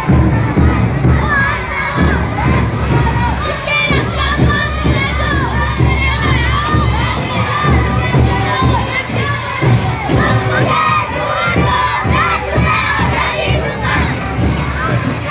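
A large group of children shouting together, many overlapping voices calling out loudly and without a break as a column of schoolchildren marches.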